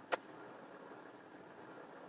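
Faint steady hum inside a stopped car's cabin, with one short click just after the start.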